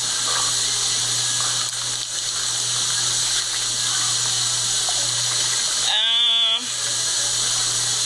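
Steady rushing hiss of running water with a low hum under it. About six seconds in there is a short vocal sound with a wavering pitch.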